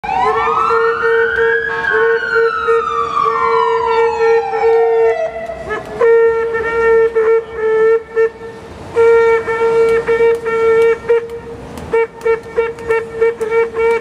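A siren wails, rising and then slowly falling away over the first five seconds. Under it a vehicle horn is held, and from about six seconds it sounds in a string of blasts that get shorter and choppier toward the end.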